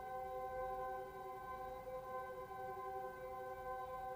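Soft ambient background music: a sustained chord of steady held tones with no beat.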